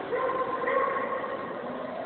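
A dog barking and yipping several times in a row.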